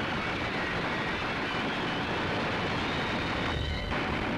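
Battle sound effects on an old newsreel soundtrack: a steady, dense roar of noise with no distinct shots or blasts.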